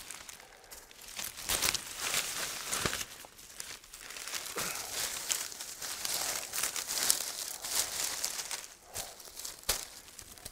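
Dry, rough water reed rustling and crackling as a bundle is worked against an old thatched roof and pinned with willow scallops pushed into the thatch. A few sharp snaps stand out, one near the end.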